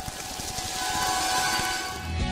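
A swelling, hissy transition effect with a few held tones, growing steadily louder: a riser leading into the programme's music.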